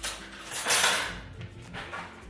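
Metal kitchen utensils clattering: a short clink at the start, then a louder rattle about half a second in.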